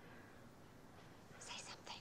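Near silence, with a brief faint whisper about one and a half seconds in.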